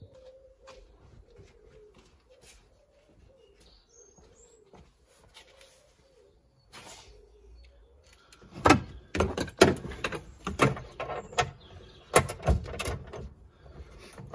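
Wrench working loose the bolt that holds a Fiat 500's front seatbelt reel and pretensioner, heard as an irregular run of sharp metallic clicks and knocks from about eight and a half seconds in. Before that it is near quiet, with a pigeon cooing faintly.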